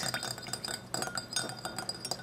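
A small metal whisk clinks and taps against a glass cup in quick, irregular strokes while whisking vinegar and oil into a creamy emulsion.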